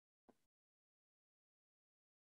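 Near silence: the sound track drops to dead silence in a pause between sentences, with only a very faint, brief blip about a third of a second in.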